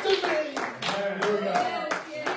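Congregation clapping in a steady rhythm, about three to four claps a second, with voices calling out over it.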